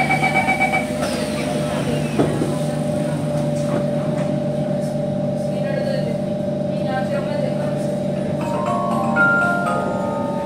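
C151 train's door-closing beeps, a quick run of pulsed tones in the first second. They are followed by the Mitsubishi GTO-chopper traction equipment whining as the train moves off, a steady tone over a low hum that steps up in pitch near the end as it gathers speed.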